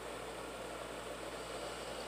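Steady hiss with a faint low hum: the background noise of a recording during a silent title card, with no distinct sounds.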